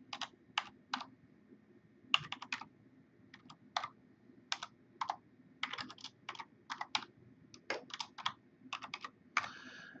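Computer keyboard keys being typed slowly, in short irregular runs of clicks with pauses between them.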